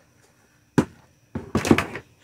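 Handling knocks from a plastic food dehydrator: one sharp knock just under a second in, then a louder, longer clatter near the end.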